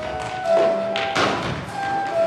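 Instrumental music with held notes, with a cluster of thumps from feet running on a wooden stage, loudest about half a second in and again around a second in.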